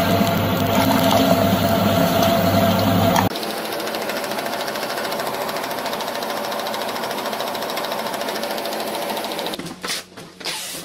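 Electric meat grinder motor running with a steady hum while minced meat is extruded. About three seconds in, the sound cuts abruptly to a quieter, rapid, even machine rattle.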